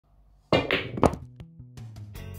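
Snooker cue striking the cue ball into the red ball: sharp knocks and clacks about half a second in and again just after a second. Guitar music then starts.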